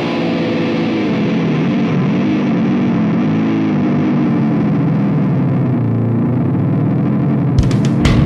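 Distorted electric guitar playing alone with bending, wavering notes at the opening of a hardcore punk song. Drums and the full band come in just before the end.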